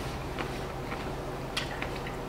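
A person chewing a mouthful of crisp tostada, with a few faint crunches over a steady low hum.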